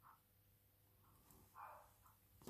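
Near silence: room tone with a faint low hum, and a brief soft sound about one and a half seconds in.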